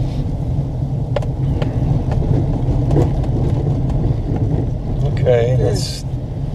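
Steady low rumble of a car driving slowly, heard from inside the cabin, with a few light clicks. A short voice sound comes near the end.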